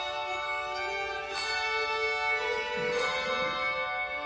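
Handbell choir and two violins playing together: long ringing bell tones with bowed violin notes over them.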